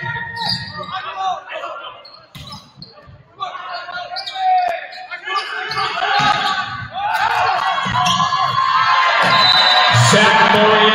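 Volleyball rally on a hardwood gym court: the ball knocks off hands and floor while players shout to each other in a large echoing hall. The shouting grows louder and denser over the last few seconds as the point ends.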